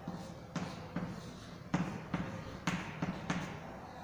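Chalk knocking and scraping on a blackboard as a ring structure is drawn: a string of about seven sharp, irregular taps.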